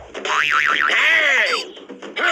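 A cartoon sound effect whose pitch wobbles rapidly up and down several times, then gives way to a few arching rise-and-fall glides.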